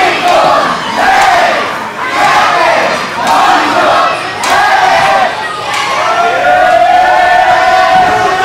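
Wrestling crowd shouting together again and again, about once a second, with a few sharp smacks among the shouts. Near the end it becomes one long drawn-out crowd shout.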